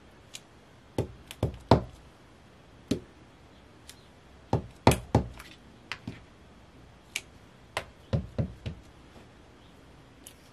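Rubber stamp mounted on a clear block being tapped onto an ink pad and pressed down onto paper on a wooden tabletop: a string of irregular sharp knocks and taps, some coming in quick pairs and triples.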